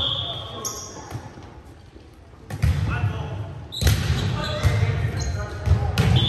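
Indoor volleyball play echoing in a gymnasium: thuds and knocks of the ball and of players moving on the hardwood floor, with short squeaks of sneakers and players' voices. There is a lull about halfway through, then the action picks up again.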